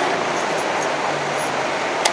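Steady street traffic noise, with a few faint clicks about halfway through.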